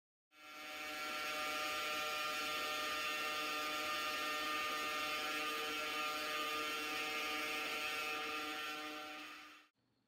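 Ingenuity Mars helicopter's coaxial rotors spinning in a vacuum chamber at Mars-like pressure: a steady whirring hum with several pitched tones over a hiss. It fades in shortly after the start and fades out near the end.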